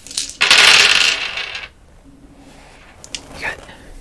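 A handful of small dice rolled and clattering onto a hard surface for a little over a second, then a few faint clicks as they settle or are handled.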